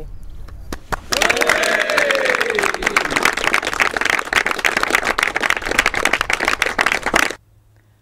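A group of people clapping and cheering. The applause starts about a second in, with one voice calling out a cheer that falls in pitch, and it stops abruptly about seven seconds in.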